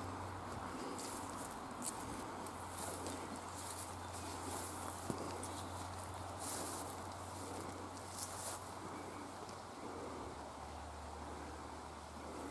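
Faint outdoor countryside ambience with soft scattered rustles and a low steady hum underneath.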